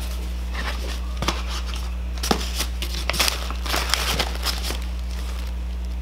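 Paper and cardboard rustling and crinkling as an opened shipping box and its wrapped contents are handled, with scattered light crackles over a steady low hum.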